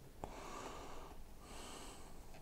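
Faint breathing close to the microphone, two soft breaths through the nose, the first about a second long, with a light click just before it.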